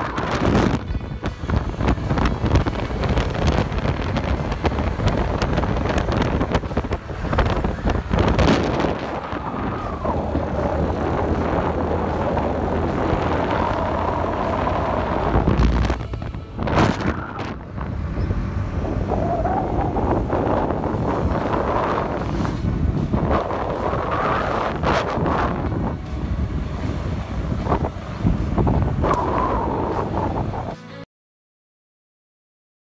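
Wind rushing over the microphone of a moving two-wheeler, with its engine running underneath and the engine note rising and falling at times.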